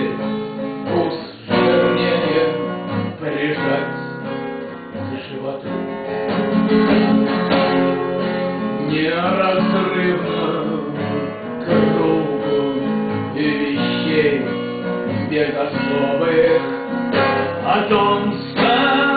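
Acoustic guitar playing an instrumental passage of a folk song, strummed and plucked.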